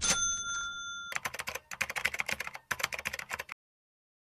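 Sound effects: a sharp bell-like ding rings for about a second, then a rapid clattering run of clicks like typing that cuts off suddenly about three and a half seconds in.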